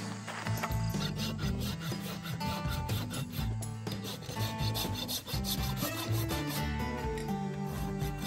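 A farrier's hoof rasp filing a horse's hoof, in a quick run of repeated scraping strokes.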